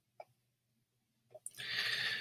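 A couple of faint computer-mouse clicks, then a short breath near the end.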